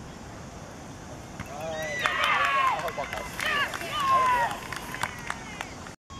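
Several high-pitched voices shouting and cheering together, starting about a second and a half in and dying away after a few seconds: cheering for a goal.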